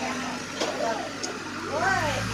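People talking and laughing, casual chatter of several voices, with a faint steady low hum underneath.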